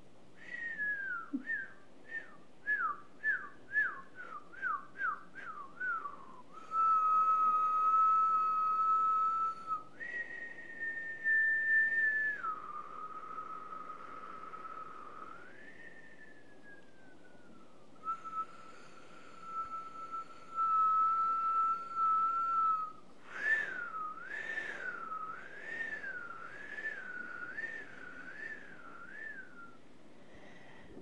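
A woman whistling by mouth. It opens with a quick run of about a dozen short falling notes, then long held notes that step up and back down, with a slow falling glide. Near the end comes a wavering, warbling note.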